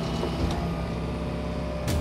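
Hitachi hydraulic excavator's diesel engine running steadily, with a short sharp click just before the end.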